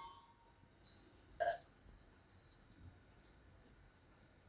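Near silence: quiet room tone, broken once about a second and a half in by a single brief, short sound.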